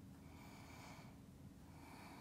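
Faint breathing through the nose, two soft breaths: one about half a second in and another starting near the end, over a low steady room hum.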